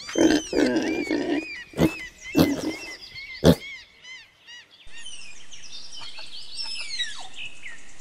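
Domestic pigs grunting and squealing, with small birds chirping high above them. About five seconds in, the pig calls stop, leaving birds chirping over a steady background noise.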